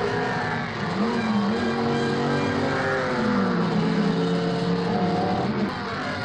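Racing sport-prototype engines running at high revs as the cars race past, the note climbing about a second in and dropping after about three seconds.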